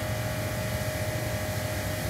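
Steady mechanical background hum with a faint, thin, steady tone running through it.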